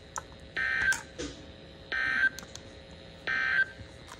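Three short bursts of screeching SAME digital data tones, about 1.4 s apart, from a NOAA Weather Radio broadcast played through a Midland handheld weather radio's speaker: the end-of-message code that closes the alert.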